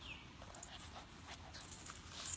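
Boston Terrier puppy mouthing and chewing a tennis ball on grass: faint, scattered small clicks and rustles.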